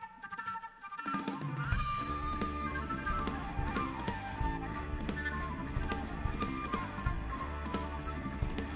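Live rock band playing a flute-led tune: a flute melody over electric guitar, bass guitar and drum kit, with the full band and drums coming in about a second in.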